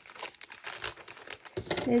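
Plastic poly mailer bag crinkling as it is handled, in irregular crackles that get louder in the second half.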